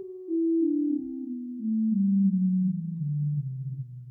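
The 16-foot flute stop of the 1898 Hope-Jones organ, played on a Prog Organ virtual pipe organ from samples of the real pipes. It plays a descending line of about ten single notes, stepping steadily down in pitch, with a plain, round flute tone.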